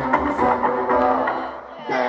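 Live concert music: a male vocalist rapping into a handheld microphone over a loud backing track. The bass and beat drop out briefly near the end, then come back in.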